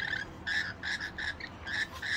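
Rainbow lorikeets feeding, giving a run of short chattering calls, about three a second.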